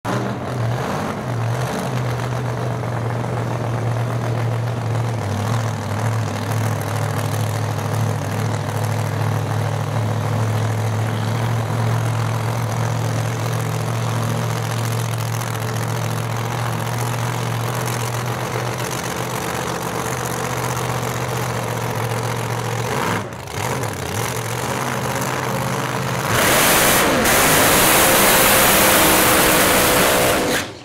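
Supercharged V8 of an outlaw Mustang drag car idling with a steady low rumble. About 26 seconds in it goes to full throttle in a burnout, a much louder, harsh blare of engine and spinning rear tyres.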